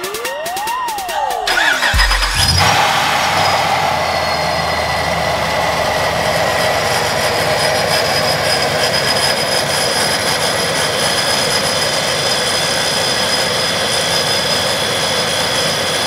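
After a short electronic sweep, the TorqStorm-supercharged 5.7 Hemi V8 of a Ram 1500 starts about two seconds in. It then idles steadily, with a high whine held over the engine note.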